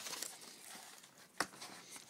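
Faint rustle of cardboard gasket boxes and packaging being handled, with one sharp click about a second and a half in.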